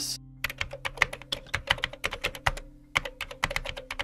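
Typing on a computer keyboard: a quick run of key clicks starting about half a second in, with a brief pause past the middle. Soft background music plays under it.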